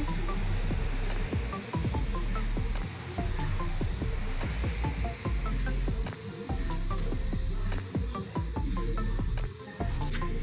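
Background music with a steady bass line, over a continuous high-pitched insect chorus.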